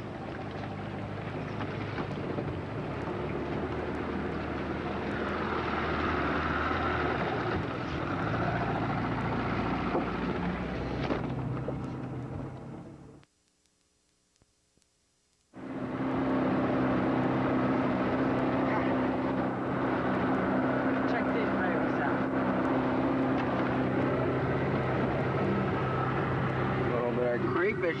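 Motorboat engine running steadily with the boat underway, a low even hum with wind noise. The sound drops out for about two seconds in the middle, then the engine hum resumes.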